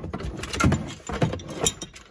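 Hands working a seatbelt's webbing and metal fittings through a plastic pillar trim panel: an irregular run of scrapes, rustles and knocks of plastic and metal, with three louder knocks spaced about half a second apart.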